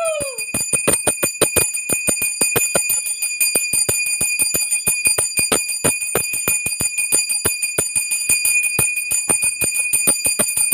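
Puja hand bell rung rapidly and steadily during worship at a home altar, about five strikes a second, with its ringing tone held throughout. A long held note falls in pitch and stops in the first half second.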